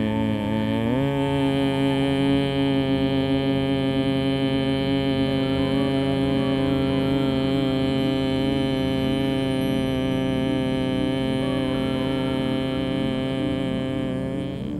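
A man's long, steady hum in bhramari pranayama (humming bee breath), one continuous tone. It rises slightly in pitch about a second in, then holds level until it fades near the end.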